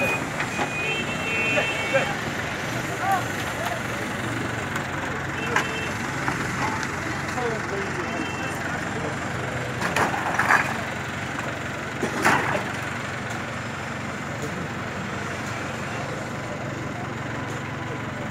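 Diesel engine of a JCB backhoe loader running steadily during demolition, with a brief high beeping in the first couple of seconds and a few sharp knocks about ten and twelve seconds in.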